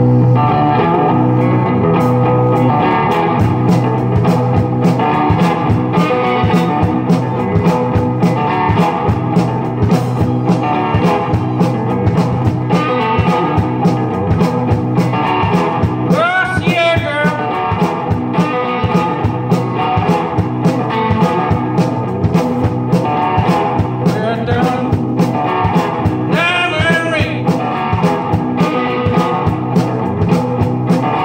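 Live blues played on guitar over a steady beat of drum strokes. A high wavering line comes in twice, once about halfway through and again near the end.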